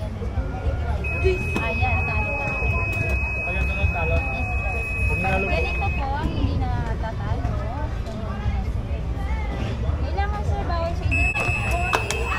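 Electronic buzzer of a buzz-wire game sounding a steady high tone for about five seconds, starting about a second in, then sounding again near the end, over nearby voices.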